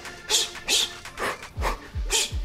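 Short, sharp breathy exhales, hissing through the teeth, timed with shadowboxing punches, over background music whose steady bass beat comes in about a second and a half in.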